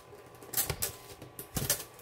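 Cardboard and a cellophane-wrapped kit box being handled: the box is pulled from its corrugated shipping box and set down flat, giving short rustling, scraping clatters in two clusters, about half a second in and again near the end.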